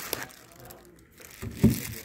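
Plastic wrapping crinkling faintly as a wrapped speaker driver is handled in its foam-lined box, then a couple of dull handling thumps about one and a half seconds in.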